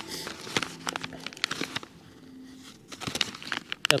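A plastic snack packet of beef jerky crinkling and rustling in the hands, a quick run of irregular crackles as it is handled and opened.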